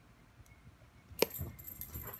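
Near silence, then a single sharp click a little over a second in as a button on a Pentair EasyTouch wireless control panel is pressed, followed by faint handling noise and a thin, high, steady tone.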